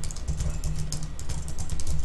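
Fast typing on a computer keyboard: a quick run of key clicks over a steady low hum.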